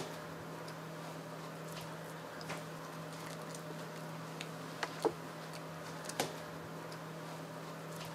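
A handful of scattered sharp clicks, a Pomeranian puppy's claws on a hard floor as it moves about, over a steady low hum.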